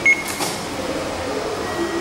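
Short electronic beep from a Japanese subway ticket machine's touchscreen as a button is pressed, followed by steady background hum.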